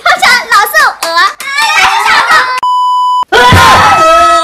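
Excited voices talking and laughing, then a single electronic beep, a steady tone about half a second long, some two and a half seconds in. Right after the beep a woman lets out a loud shout.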